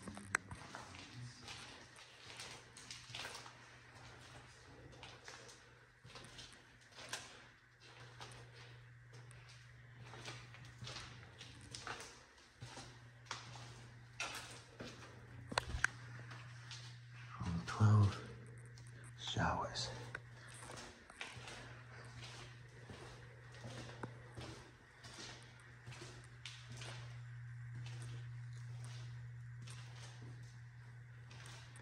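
Footsteps on a debris-strewn floor, about two steps a second, over a steady low hum. A little past halfway come two louder wavering sounds, close together.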